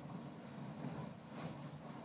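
Puff and Stuff Geyser's steam vent giving off a faint, low, steady rush of steam.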